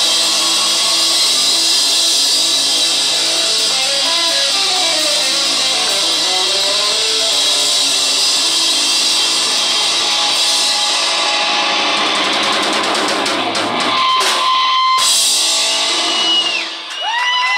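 Live rock band playing at a loud, steady level: electric guitar over bass guitar and drum kit, with a few sharp drum hits near the end.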